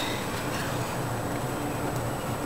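Steady background noise with a faint low hum and no distinct sound event.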